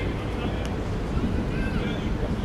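Youth football players shouting on the pitch, short high-pitched calls heard faintly over a steady low rumble, the loudest call near the end.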